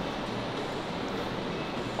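Steady, even background hiss of the room, with no distinct events.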